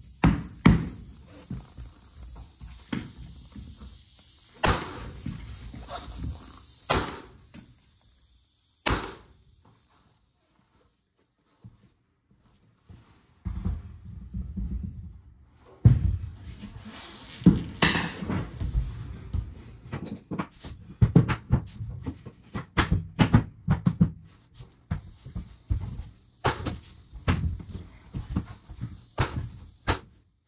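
A series of sharp knocks and thunks from a mallet pounding solid oak floor boards tight and striking a pneumatic flooring nailer to drive nails. There is a quiet pause about a third of the way in, then the strikes come faster and more densely.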